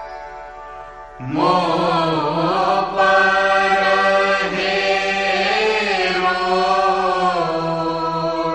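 Devotional chanting: a single voice comes in about a second in, singing long held notes that slide slowly in pitch over a steady drone.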